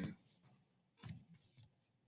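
Near silence, with a few faint clicks from a computer keyboard about a second in as a value is typed into a field.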